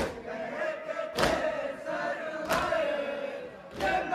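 Mourners performing matam, striking their chests in unison with one sharp slap about every 1.2 seconds, four times. Between the slaps a crowd of men's voices chants a nauha.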